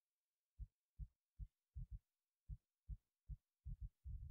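Near silence with faint, short, low thumps repeating about two to three times a second, some in quick pairs.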